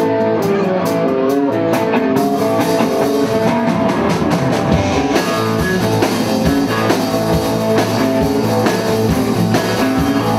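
Live band playing: electric guitar and drum kit, with cymbals coming in about two seconds in and the low end filling out about halfway through.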